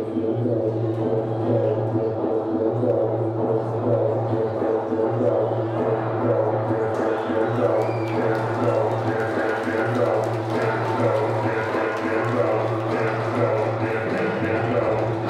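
Traditional Muay Thai ring music (sarama): a reedy wind-instrument melody over a steady low drone.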